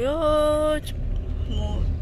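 Low, steady rumble of a car driving on an unpaved road, heard from inside the cabin. A drawn-out voice sounds over it for the first second.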